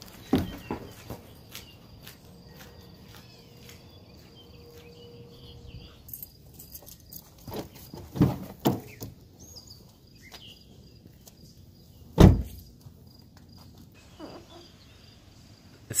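Quiet outdoor background noise with a faint, steady high tone, scattered short knocks and rustles, and one loud thump about twelve seconds in.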